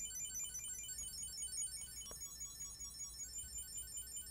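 Chipolo tracker card inside an Ekster wallet ringing, a faint, quick run of short high electronic beeps repeating in a tune, set off from the Apple Watch to locate the wallet.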